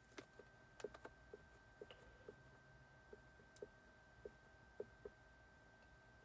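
Faint clicks of a GM Tech 2 clone scan tool's keypad buttons, pressed about a dozen times at an uneven pace while scrolling down a menu.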